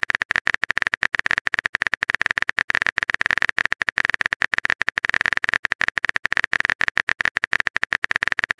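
Simulated phone-keyboard typing sound effect: a fast, uneven run of sharp key clicks as a long text message is typed out.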